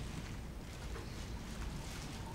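Quiet hall ambience: a steady low hum with a faint haze of noise and a few soft movement sounds.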